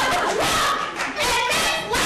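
Two people shouting over each other in a heated argument, loud and overlapping, with a couple of short breaks for breath.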